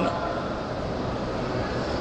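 Steady background hiss and low rumble, even throughout, with no distinct event.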